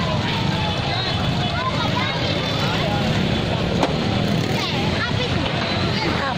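Crowd of many people talking and shouting over one another, with a steady low rumble of motorbike engines underneath.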